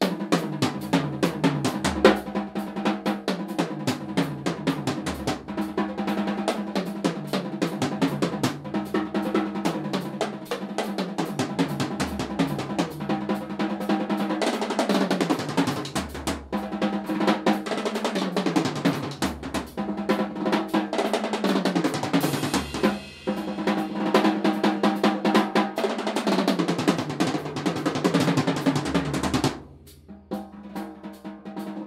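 Full drum kit played continuously, with snare, bass drum and tom fills. The kit's toms include a 9x10 tom with a cardboard concrete-form tube shell, played alongside plywood-shell drums. Cymbals ring brighter in the second half, with a brief pause about three quarters of the way through, and the playing stops just before the end.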